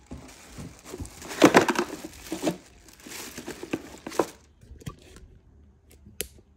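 Plastic wrapping crinkling and rustling in irregular bursts as a boxed juicer is unwrapped and handled, loudest about one and a half seconds in and dying away after about four seconds, leaving a few light clicks.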